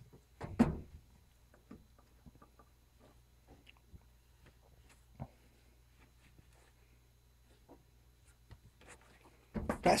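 Soft, scattered rustles and faint knocks of clothes being lifted from a plastic laundry basket and pushed into a dryer drum, over a low steady hum. A louder short thump comes just after the start and another near the middle.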